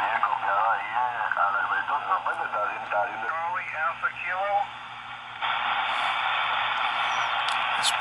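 Single-sideband voice on the 20-metre amateur band coming through the R-2322/G military HF receiver's loudspeaker: a thin, narrow-band voice over steady hiss. It stops about five seconds in, and then only the hiss of the open band is left.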